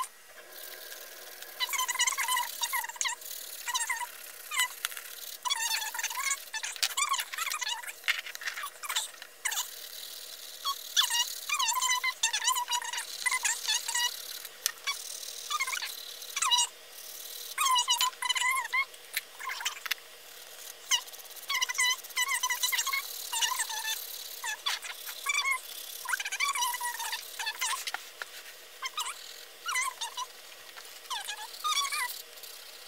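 Colored pencil rubbed rapidly back and forth across a paper page while colouring it in, each stroke giving a short squeaky scratch, over and over.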